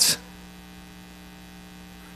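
Steady electrical mains hum on the sound system: a low, even buzz made of a stack of evenly spaced steady tones.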